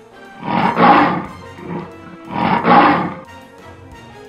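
A lion roaring twice, each roar lasting about a second, as a cartoon sound effect over quiet background music.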